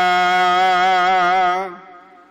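A singer holding one long sung note with a slight waver at the end of a line of a Sikh Gurbani hymn, the note fading out about three quarters of the way through.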